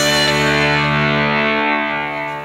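Yamaha electronic keyboard in an electone arrangement holding a sustained closing chord, with a guitar-like voice. The chord begins to fade near the end.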